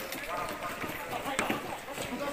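Hurried footsteps of a group of men on a paved street, with men's voices talking over them and a sharp knock about one and a half seconds in.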